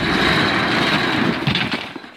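Corrugated steel roll-up door of a storage unit being pushed up by hand: a loud, continuous rattling rumble as the slats coil up, dying away just before the end.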